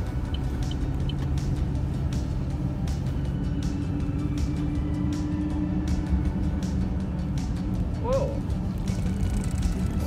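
Steady road and engine noise heard from inside a moving car, with music playing underneath.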